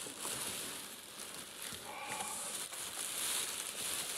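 Clear plastic wrapping crinkling and rustling as a wrapped wheel is handled and lifted out of a cardboard box.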